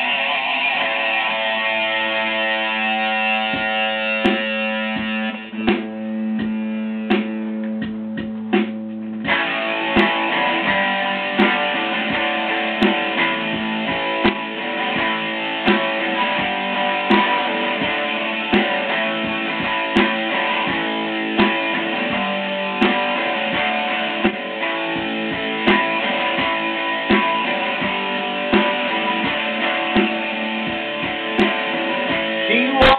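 Electric guitar playing the instrumental part of a rock song: long held notes at first, then from about nine seconds in a fuller part over a steady beat with a strong hit about every second and a half.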